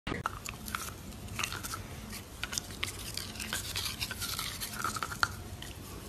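Dog gnawing and chewing on a plastic toothbrush: irregular scratchy clicks and scrapes of teeth and bristles.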